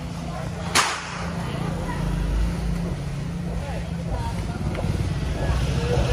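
Small underbone motorcycle engine running as the bike rides in, growing louder toward the end. A single sharp click comes about a second in.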